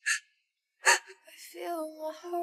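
Two sharp breathy gasps, the second, a little under a second in, louder and fuller. Soft music with held notes begins near the end.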